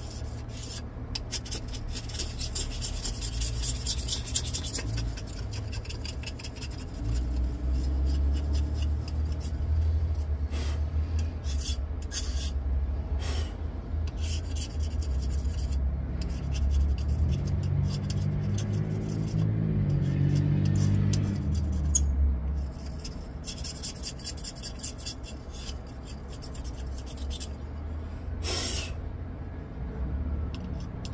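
Laser-burned paint being scraped off a ceramic tile: repeated rasping scrape strokes throughout. A low rumble rises about a quarter of the way in and fades out about two-thirds of the way through.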